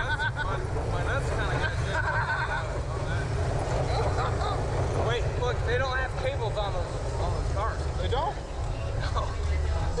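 Men laughing and talking indistinctly, over a steady low rumble.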